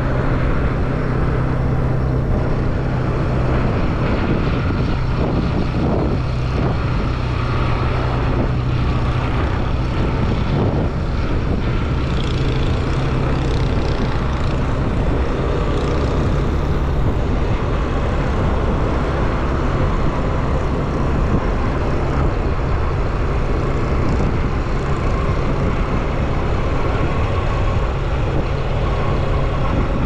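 Steady running noise of a moving vehicle, with a low engine hum and road and wind noise, heard from on board while travelling along the highway.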